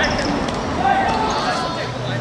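Live sound of a football game on a hard court: players shouting to each other over the thuds of the ball on the hard surface. The loudest shouting comes about a second in.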